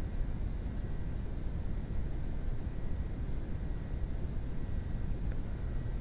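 Steady background noise of the recording microphone with a low rumble and a faint steady high tone: room tone, with no distinct events.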